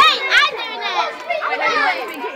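Teenage girls' voices: excited shouting and overlapping chatter, loudest at the start.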